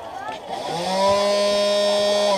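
Electric-chair Halloween prop's loud electric buzzing effect: a deep buzz swoops up in pitch about half a second in, then holds steady.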